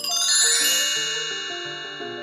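A bright chime sound effect strikes right at the start, many high ringing tones that slowly fade away, over background music with a moving melody.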